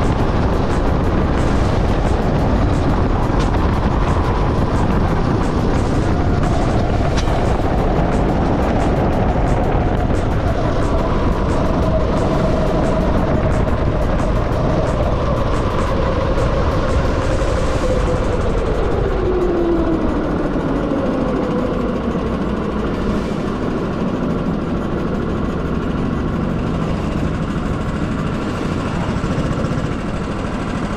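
Sodi SR5 rental go-kart's engine heard from the driver's seat, with wind rush on the camera. The kart is running at speed at first, then its engine note falls steadily as it slows toward the pit lane.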